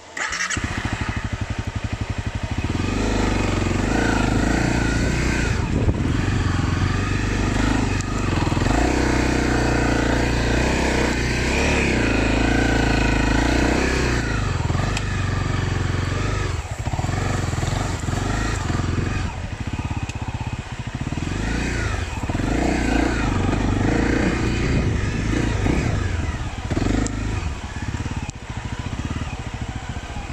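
Dirt bike engine catching suddenly at the start, then running loud and steady with revs rising and falling.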